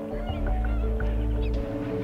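A flock of flamingos calling with many short honks, over background music with long held notes.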